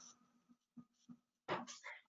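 Near silence on the webinar line with a few faint ticks, then a brief sound of under half a second about one and a half seconds in, just before the caller's microphone carries her voice.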